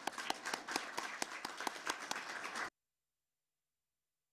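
A small audience clapping, dense irregular hand claps that cut off abruptly about two and a half seconds in, leaving dead silence as the audio feed ends.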